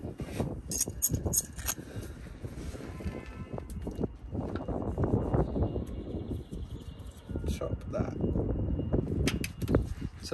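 Handling noise: gloved hands bending and feeding a plastic diff breather hose around a coil spring, with rustling and scattered light clicks and knocks.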